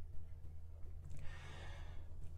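A person drawing a soft breath in through the mouth, a quiet breathy hiss starting a little past halfway, over a steady low hum.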